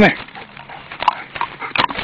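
A dog right up against the phone, with short snuffling and rustling noises as its fur brushes over the microphone.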